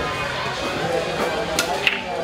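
Two sharp clacks of billiard balls striking each other near the end, over a steady background of crowd chatter.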